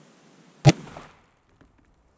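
A single 30-06 Springfield rifle shot with a reduced load, a sharp crack about half a second in as the bullet strikes the ballistic gel blocks and knocks them apart, followed by a short echo. A few faint ticks follow.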